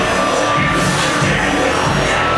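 Live metalcore band playing at full volume, with electric guitars and drums filling the sound without a break, picked up from among the crowd in the hall.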